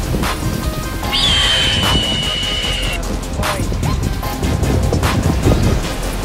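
Background music with a regular beat about every second and a half and a long high held note lasting about two seconds from about a second in, over a steady low rumble.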